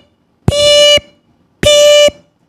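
Microwave oven beeping: two beeps of the same steady electronic tone, each about half a second long and about a second apart.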